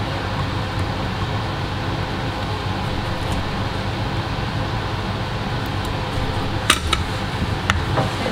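Steady whirring of the fans on an electronics rework bench, with a low hum, as the board preheater and extraction run to heat a graphics card for desoldering. Two or three sharp clicks come near the end.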